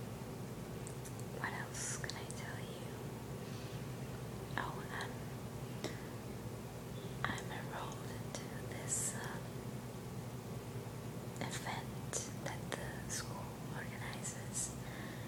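A woman whispering, her hissing s-sounds coming in short scattered bursts, over a steady low hum.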